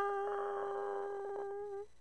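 One long, steady, horn-like musical note that closes a short brass sting, fading gradually and cutting off just before the end.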